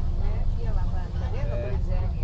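Steady low rumble of a bus's engine and tyres heard from inside the cabin, with indistinct voices talking over it.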